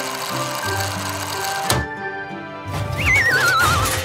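Cartoon sound effects over background music: a crane's motor humming steadily, then a sudden crash just under two seconds in as a shipping container falls over. Near the end comes a wavering whistle that slides down in pitch.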